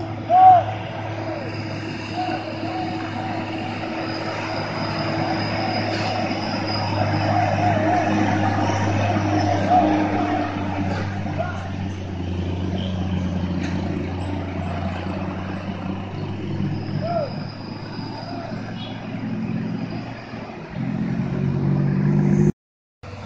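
The diesel engine of a heavily loaded Hino 500 truck runs steadily under load as it climbs slowly through a hairpin bend, with cars and motorcycles passing. Short rising-and-falling voice calls sound over it near the start and again several seconds in, and another heavy engine comes in near the end.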